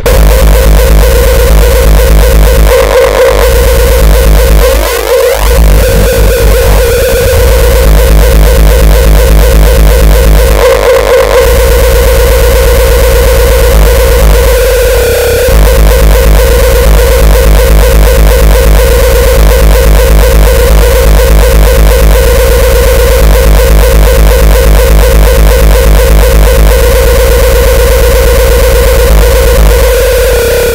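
Uptempo hardcore music: a loud, distorted kick drum beating very fast under a held distorted synth note, the beat dropping out briefly a few times.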